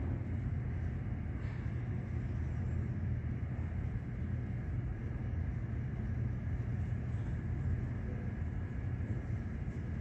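Steady low rumble and hum with a faint steady high tone above it, unchanging throughout.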